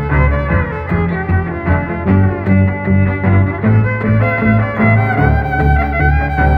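Rock violin instrumental: a bowed violin carries the melody over a low accompaniment that pulses about twice a second.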